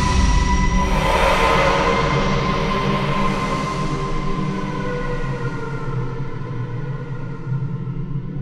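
Steinberg X-Stream spectral synthesizer playing its 'Adriana's Lost Souls' preset from a keyboard: a slowly evolving sustained pad of held tones over a low drone. A hissing swell comes about a second in, some tones slide slowly downward, and the bright upper part gradually fades.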